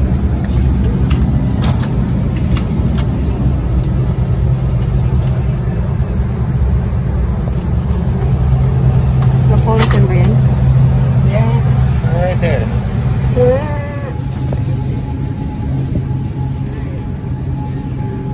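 Supermarket aisle ambience: a steady low hum and rumble, with a voice talking indistinctly from about halfway through until a few seconds later.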